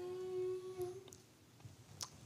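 A hummed "mmm" from a person's voice, held on one steady pitch and ending about a second in.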